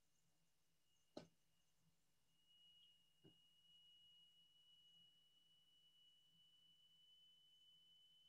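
Near silence on a conference-call audio line, with a faint steady high-pitched tone that becomes a little stronger partway through. A sharp click sounds about a second in and a fainter one a couple of seconds later.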